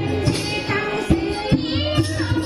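A woman singing a song over instrumental accompaniment, with a couple of sharp beats about a second and a second and a half in.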